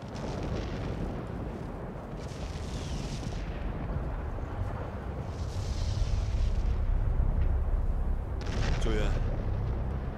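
Deep, continuous rumbling of an erupting volcano. It starts abruptly and builds louder, and higher gusts of wind hiss over it twice.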